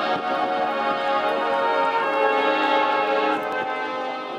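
Slow brass-led music holding sustained chords, with a change of chord about two seconds in.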